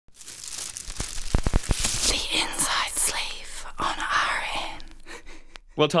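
Sound design of an animated radio-station logo ident: a noisy rushing, crackling texture with a quick cluster of sharp knocks about a second and a half in, fading before a man's voice starts right at the end.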